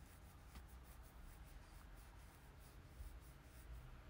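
Near silence: low room hum with faint, irregular scratchy ticks, several a second, that fade out near the end.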